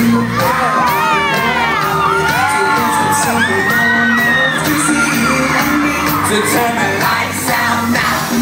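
A live pop band plays loudly through a venue PA with a steady bass and beat. Fans close to the phone scream and whoop in high, wavering cries from about half a second in until about five seconds in.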